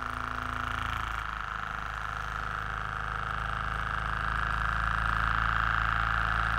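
Small model Stirling engine running on an alcohol flame and turning its mini generator: a steady mechanical hum, growing slightly louder toward the end.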